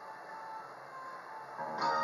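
A karaoke backing track starting its intro: a few faint single notes over low hiss, then a fuller, louder arrangement coming in near the end.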